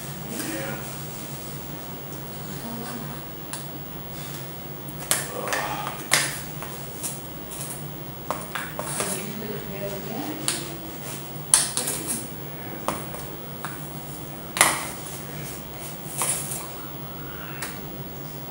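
A metal spoon stirring in a stainless steel pot, scraping and clinking against the pot's sides at irregular intervals, with two sharper clinks about midway and about three-quarters of the way through.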